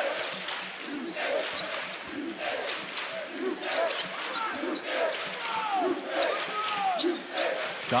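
A basketball dribbling on a hardwood court, with short sneaker squeaks and the chatter of an arena crowd.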